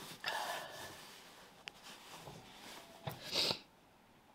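A woman sniffing and breathing unsteadily while tearful: a breath near the start, a tiny click, and a sharp sniff about three seconds in.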